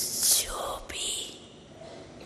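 An elderly woman speaking softly and breathily into close microphones, her words dominated by strong hissing s- and sh-sounds, for a little over a second before falling quiet.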